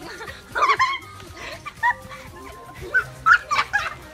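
Girls laughing and squealing in short loud bursts, about half a second in, briefly near two seconds, and again several times near the end, over steady background music.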